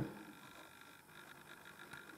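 Faint room tone: a steady low hiss with a few thin, faint high tones.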